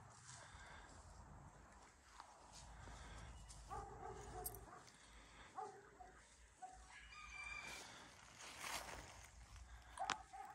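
Faint barking of a distant dog, a few barks from about four to six and a half seconds in, over a near-silent background.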